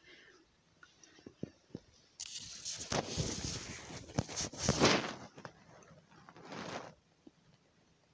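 Scratchy rustle of a lace net curtain brushing over the phone as it is pushed aside, lasting about three seconds, with a shorter rustle near the end and a few small knocks before it.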